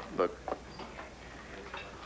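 A man's voice says one short word near the start, then quiet room tone for the rest of the moment.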